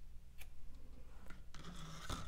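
Scissors snipping cotton candle wick string: one faint, sharp snip about half a second in, then a few lighter clicks and rustles of the wick being handled.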